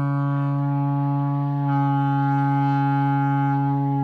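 A shofar sounded in one long, steady blast at a single low pitch, growing a little fuller and louder about two seconds in.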